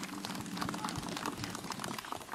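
Crowd applauding: a steady patter of many hands clapping.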